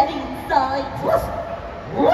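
Dog-like barking and yipping: a few short yaps about half a second in and again just after a second.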